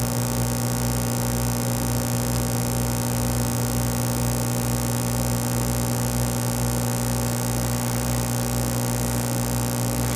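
Steady electrical mains hum: a low, constant buzz with a stack of overtones and a faint, even pulsing in its lowest part.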